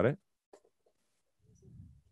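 Mostly near quiet room tone, with a short spoken question at the very start. A single faint click comes about half a second in, and a faint low murmured voice near the end.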